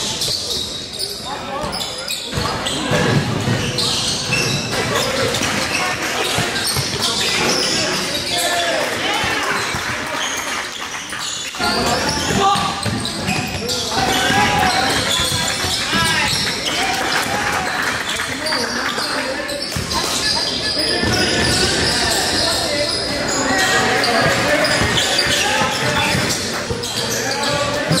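Basketballs bouncing on a gym floor among indistinct voices of players and onlookers, echoing in a large gym.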